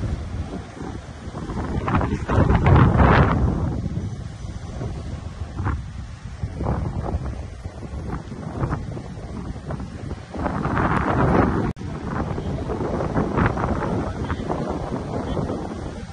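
Wind buffeting the microphone in gusts, loudest about three seconds in and again around eleven seconds, over the low rumble of slow-moving cars.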